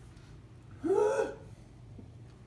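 A person's short voiced gasp about a second in, its pitch rising and then falling, lasting about half a second.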